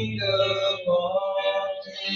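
A voice singing a slow worship song with long, held notes, over electric guitar accompaniment.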